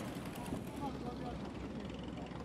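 Longtail boat engine running with a faint, steady low drone over an even background hiss.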